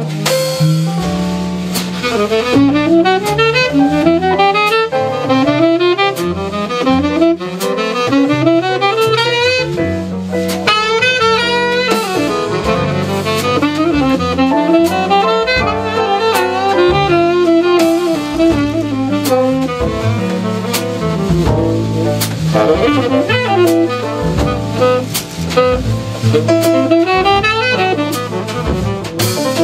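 Live jazz quartet: a tenor saxophone plays a solo of quick rising runs over piano, walking double bass and drums, with frequent cymbal strikes.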